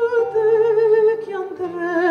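A woman sings held notes with wide vibrato, stepping down in pitch about halfway through, accompanying herself on a nylon-string classical guitar.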